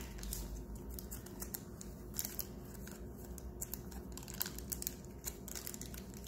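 Small plastic packaging and accessories being handled: soft crinkling with many short, scattered crackles and light clicks.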